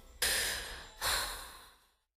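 Two breathy sighs at the close of an R&B track. Each comes in suddenly, the second about 0.8 s after the first, and fades away, and the audio then ends.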